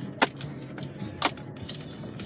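Car interior while driving slowly over a bumpy grass field: a steady low rumble from the car rolling, broken by two sharp rattling clicks, a loud one about a quarter second in and a softer one about a second later.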